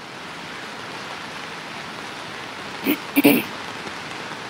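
Steady rain falling, heard as an even hiss over the reporter's outdoor microphone, with a short spoken sound or two about three seconds in.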